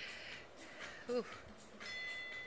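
A short falling "ooh" from a woman about a second in; near the end a Tabata interval-timer app on a phone starts a steady high electronic bell tone, signalling the end of the 10-second rest.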